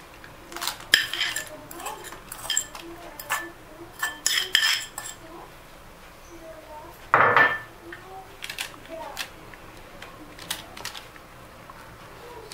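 A metal spoon clinking and scraping against a small ceramic bowl and a tray as candied fruit cubes are scooped out and spread on parchment paper. There is a quick run of clinks in the first five seconds, one louder, longer noise about seven seconds in, then lighter taps.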